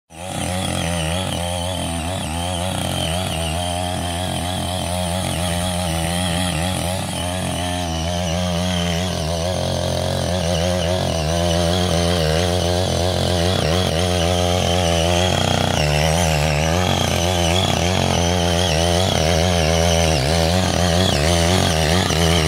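Small engine of a CY80G-SC80 folding mini cultivator running steadily under load while its rotary tines churn through grass and wet soil, the engine note wavering slightly as the load changes.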